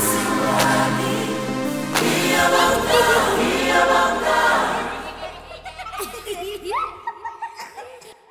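Gospel song with choir and lead singing over instruments, fading out about five seconds in. Then faint children's voices and laughter.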